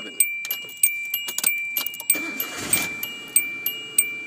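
A 2000 Hyundai Accent's warning chime dings about three times a second. About two seconds in, a short burst of noise comes as the engine is cranked and starts, bringing the alternator up to charging voltage.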